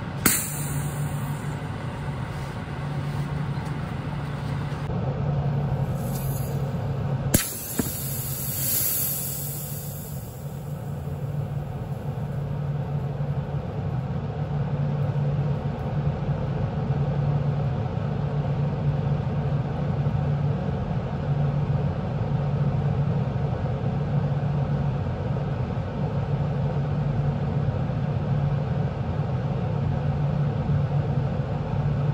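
Electrolytic capacitor wired straight to mains power failing: a sharp pop as power hits, a louder crack about seven seconds in, then steady hissing as it vents smoke, over a low steady hum.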